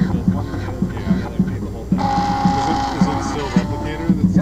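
Dual-extruder MakerBot 3D printer running a print, its stepper motors buzzing in short repeated pulses as the print heads move. About halfway through, a louder hiss with a steady whine comes in for about a second and a half.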